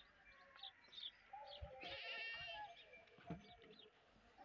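A faint bleating call from a farm animal, lasting about a second, near the middle.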